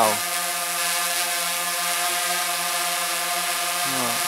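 DJI Phantom 3 Advanced quadcopter hovering overhead: the steady, even hum and whine of its four motors and propellers. The drone is carrying the extra weight of an attached flashlight, which makes its noise a little louder.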